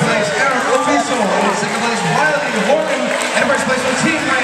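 Many overlapping voices in a busy tournament hall: spectators and coaches shouting and talking over one another, with no single voice standing out.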